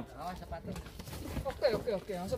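Faint men's voices talking in the background.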